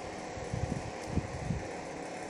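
Handling noise on a phone's microphone: a few low, muffled thumps and rubs over a faint steady background hum.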